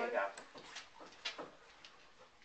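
A woman's voice trails off, then a quiet room with a few faint, short clicks at scattered moments.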